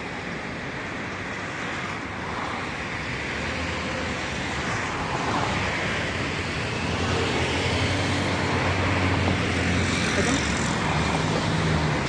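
Road traffic on a city street: cars driving past in a steady wash of tyre and engine noise, getting louder in the second half as a vehicle's engine hum passes close by.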